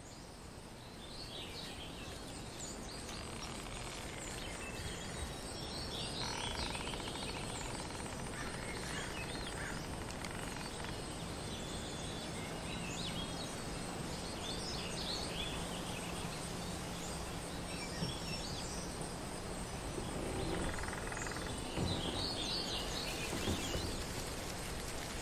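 Forest ambience: scattered bird chirps and calls over a steady wash of background noise, swelling slightly over the first few seconds.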